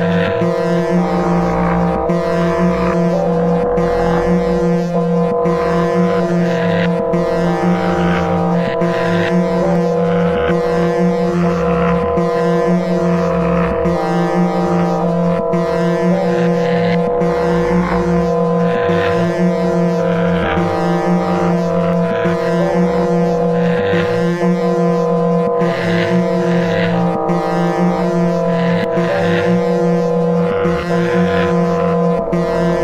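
Live-coded electronic music from SuperCollider: a dense, sustained drone of steady low tones, with higher tones stepping in pitch about every second over a regular pulse.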